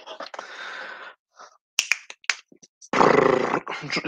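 A loud, rough, gravelly growl-like vocal sound about three seconds in, after a soft hiss and a couple of sharp clicks.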